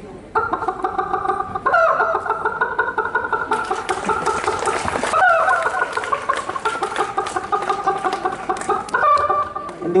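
A man's voice imitating a chicken into a microphone through cupped hands, in about four long runs of rapid, pulsing calls.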